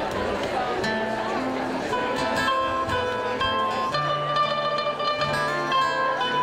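Live acoustic guitar and mandolin beginning the intro of an Irish-style rock song over audience chatter. Scattered plucked notes come in about a second in and settle into a steady melody from about two seconds in.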